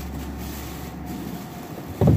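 A steady low rumble over faint background noise, which drops away shortly before the end.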